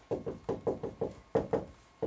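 Felt-tip marker knocking against a whiteboard as a word is written in capital letters: about eight short, sharp taps, roughly four a second.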